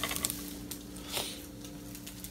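Chicken and eggs sizzling softly in a frying pan, over a steady low hum, with one brief scrape of the slotted spatula about a second in.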